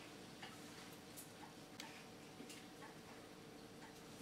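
Near silence: faint room hum with soft ticks about every two-thirds of a second.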